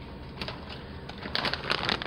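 Quiet rustling of plastic cheese packaging being handled, with a few light crinkles and clicks in the last part.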